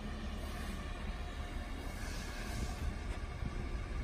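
Electric-converted 1949 Mercury coupe rolling slowly on concrete: a steady low rumble and hiss, with no engine note.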